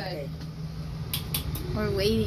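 A steady low hum and rumble, with two quick clicks a little after a second in and brief snatches of speech at the start and end.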